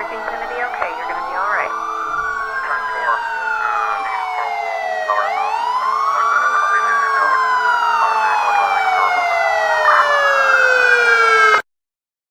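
Emergency vehicle sirens, two at once: one wailing up and down every couple of seconds, the other sliding down in long falling sweeps. They grow louder, as if approaching, and cut off suddenly near the end.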